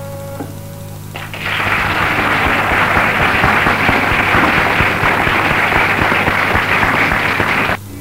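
An audience applauding on the soundtrack, starting about a second in just after a held musical note ends, and cutting off abruptly shortly before the music starts again. A low steady hum runs underneath at the start.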